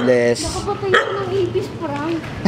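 A small dog whining and yipping, with people's voices around it.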